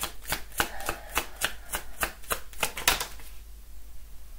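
A deck of tarot cards being shuffled by hand: a fast, even run of soft card slaps, about six a second, stopping about three seconds in.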